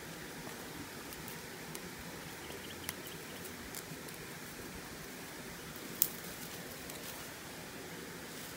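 Steady riverside background hiss with faint rustling and small scattered clicks, and one sharp click about six seconds in.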